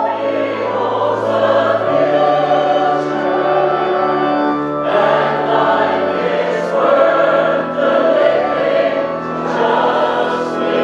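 Church choir singing a hymn over sustained bass notes that change every second or two.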